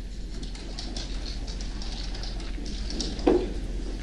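A man weeping quietly between sentences, with one short, muffled sob about three seconds in, over a steady low hum.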